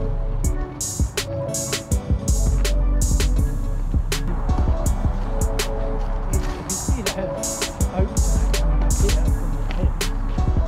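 Background music with a steady drum beat over a bass line.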